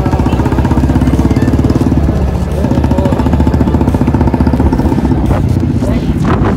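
TVS Ntorq 125 scooter's single-cylinder engine running as the scooter rides along at low speed, with a fast, rough pulsing.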